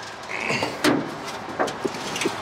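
Hood of a 1978 Plymouth Trail Duster being unlatched and raised: a brief metal scrape, then a sharp clunk just under a second in, followed by a couple of lighter knocks.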